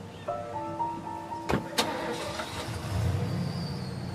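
Background music with long held notes; a pickup truck's door shuts with two sharp knocks about a second and a half in, and a low engine rumble follows near the end.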